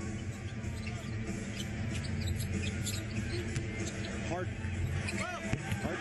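Basketball arena crowd noise during live play, with a basketball bouncing on the hardwood court and brief voices.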